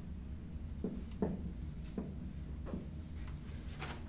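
Dry-erase marker writing on a whiteboard: a handful of short, separate pen strokes and taps as symbols are written out.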